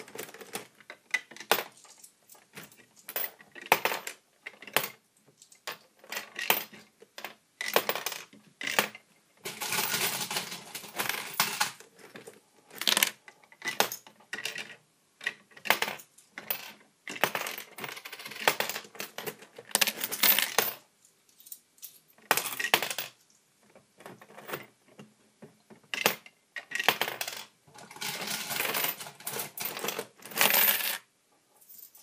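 Coins being fed quickly into a homemade Lego coin pusher, clinking and clattering as they drop onto the pile of other coins and plastic bricks. Single clinks come at irregular intervals, broken by several runs of jingling a second or two long where many coins land together.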